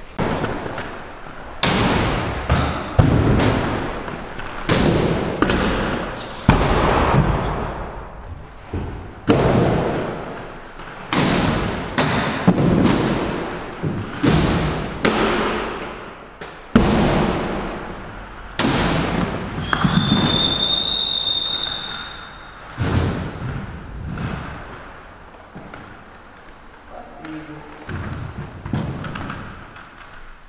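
Inline skates landing hard on a wooden skate ramp again and again, well over a dozen heavy thuds about one to two seconds apart, each echoing in a large hall, with the noise of skate wheels rolling between them. The thuds thin out in the last third.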